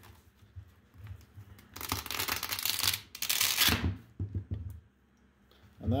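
Resin support lattice crackling and snapping as it is peeled by hand off a clear resin 3D print, in two dense bursts of about a second each, followed by a few soft knocks.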